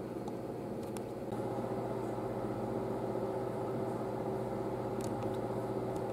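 June Oven countertop oven running while it preheats: a steady appliance hum, a little louder from about a second in, with a couple of faint clicks.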